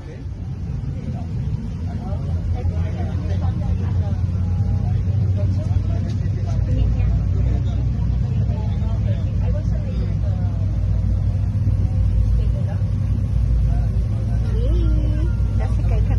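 A small boat's motor running with a low, steady rumble, growing louder over the first few seconds as the boat gets under way and then holding steady.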